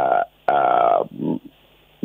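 A man's voice breaking off mid-sentence with a drawn-out hesitation sound, 'uhh', then a short lower vocal sound and a brief pause.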